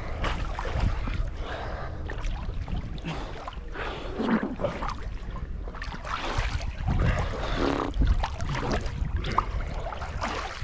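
Muddy river water sloshing and swishing around people wading chest-deep while hauling a seine net, with a low, uneven rumble of water moving against the camera's microphone.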